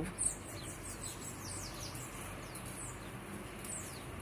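A small bird giving a run of faint, thin, high-pitched chirps that each slide downward, about three a second, over a low steady background hum.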